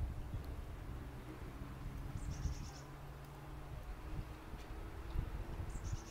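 A small bird calls twice, each a short high trill of quick repeated notes: once about two seconds in and again near the end. A low steady hum runs underneath.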